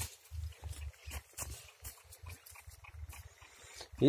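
Dog sniffing and snuffling at the ground in short, irregular, faint bursts while it searches for prey.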